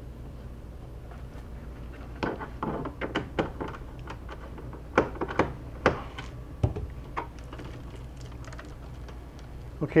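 Scattered sharp clicks and light knocks of hands working the screws and plastic back cover of an HP Pavilion 23 all-in-one computer. They are bunched in the middle of the stretch, over a low steady hum.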